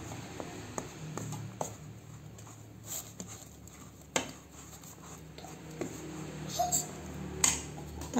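A plastic rice paddle stirring and scraping damp rice flour in an enamel basin, with scattered light taps and clicks of the paddle against the bowl, the sharpest about four seconds in. This is rice flour being mixed with boiling water into moist crumbs for gempol dough.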